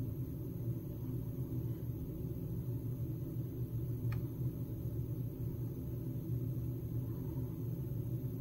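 Steady low background hum with no other activity, and one faint click about four seconds in.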